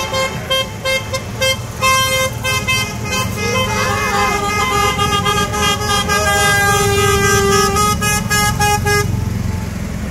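Several golf cart and side-by-side horns honking over and over at different pitches, mostly short toots with a few long holds. The honking stops abruptly about nine seconds in, leaving a low rumble of the passing carts underneath.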